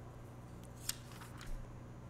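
A quiet pause in a man's speech: steady low hum of room tone, with one faint sharp click a little before the middle and a soft small sound about one and a half seconds in.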